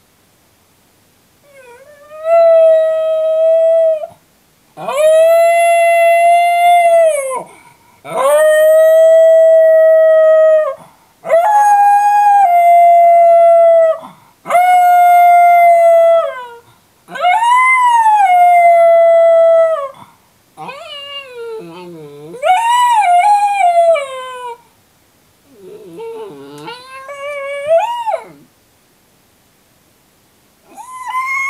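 A miniature schnauzer howling while left alone in its crate. It gives six long howls, each held at a steady high pitch for two to three seconds, then a few wavering howls that slide up and down in pitch.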